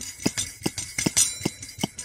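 Coleman 533 dual-fuel stove's pump plunger being stroked to pressurise the fuel tank for priming: a steady run of light clicks, a stronger one about every 0.4 s with fainter ones between.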